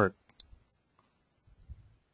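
A few short, faint clicks about half a second in, in a pause between words.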